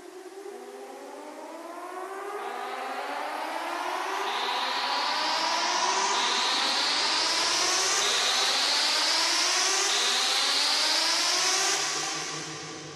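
Minimal techno build-up with no beat: layered synth tones glide upward again and again, a new sweep starting about every two seconds, over a noise wash that swells louder through the first half and dips near the end.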